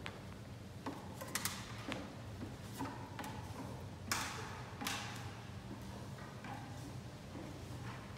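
Scattered knocks, taps and clicks from someone climbing and moving around on a ladder inside a pipe organ's case and handling a long metal rod. Underneath is a steady low hum.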